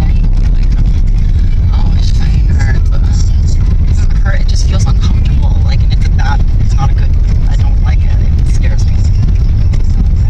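Steady low rumble of road and engine noise inside a moving car's cabin, with faint, indistinct talking under it through most of the middle.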